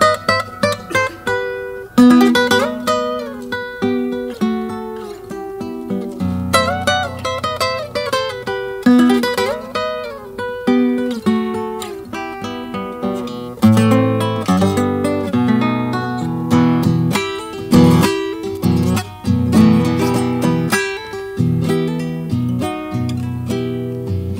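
Acoustic guitar playing the introduction to an Argentine folk song: picked melody runs over bass notes, turning louder into fuller strummed chords about halfway through.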